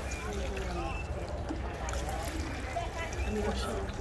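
Water spraying from a hand-pumped sprinkler head and splashing onto a tray of wet sand and pooled water, with faint children's voices behind it.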